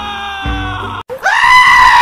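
Background music that cuts out about a second in, followed by a loud, high-pitched scream that rises at its start and then holds steady.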